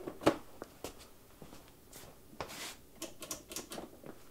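Scattered clicks and knocks of hands handling the plastic battery compartment lid and a Ryobi 40V battery with its wiring, the sharpest click about a quarter second in and a short rustle near the middle. The dethatcher's motor does not run.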